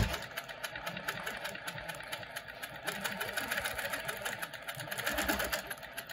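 Sewing machine stitching steadily in a fast, even rhythm of needle strokes, doing free-motion ruler quilting along the edge of an acrylic template.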